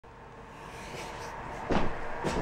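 Faint room noise, then a short, louder knock or bump near the end, likely from someone moving close to the camera.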